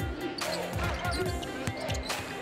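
A basketball dribbled on a hardwood court: a run of low thuds a few tenths of a second apart, over arena noise and music.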